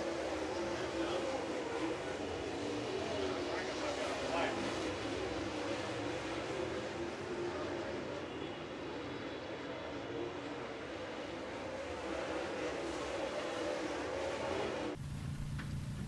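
Dirt late model race cars' V8 engines running around the track at a distance, their pitch wavering as they circle, over a bed of crowd noise. About a second before the end the sound cuts abruptly to a quieter outdoor background.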